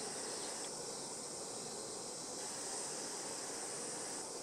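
A steady, high-pitched chorus of insects, even and unbroken.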